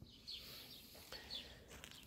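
Near silence, with two faint, high, short bird chirps about a second apart.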